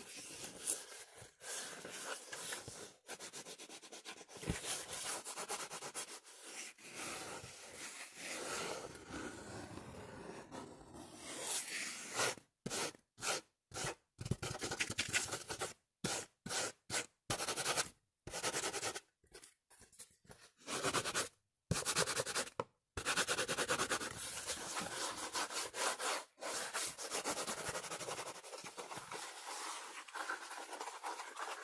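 Fingers scratching and rubbing a sheet of cardboard held close to the microphone, a dense, rapid, scratchy rustle. Through the middle stretch the scratching comes in short bursts broken by brief silences, then runs on steadily again.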